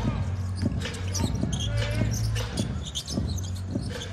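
Basketball bouncing on a hardwood arena court, a short knock every half second to a second, over a steady low hum and the murmur of the arena crowd.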